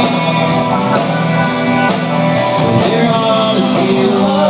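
Live country-rock band playing: electric and acoustic guitars over drums, with cymbal hits keeping a steady beat about twice a second.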